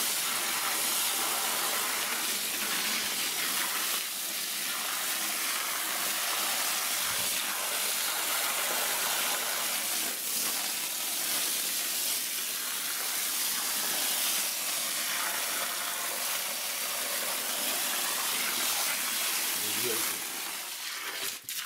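A strong jet of water from a garden hose beating on wet soil and pooled water: a steady hissing spray, hard enough to make the water froth.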